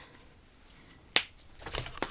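A single sharp click about halfway through, from a plastic fountain pen being handled and laid on the planner; otherwise only faint handling noise.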